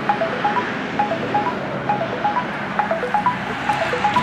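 Background music of light bell-like chime notes: a short tune of a few pitches repeating about once a second, over a steady soft hiss.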